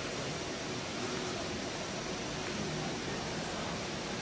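Steady hiss of background noise, even and unchanging, with no distinct event.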